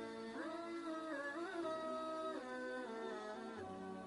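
Background music: a slow melody of held notes that slide smoothly from one pitch to the next.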